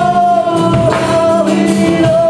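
Live worship band: singers holding one long note over guitar and drum kit.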